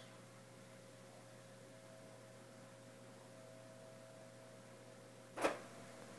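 Quiet room tone with a faint steady electrical hum. A brief knock sounds near the end.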